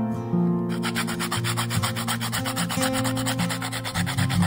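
Whole nutmeg scraped on a small metal hand grater in quick, even strokes, starting about a second in, over acoustic guitar music.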